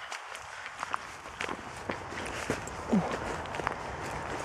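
Footsteps through long grass and undergrowth, with irregular sharp crackles and rustling of dry vegetation.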